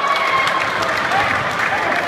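Crowd applauding, with many voices shouting and talking over the clapping.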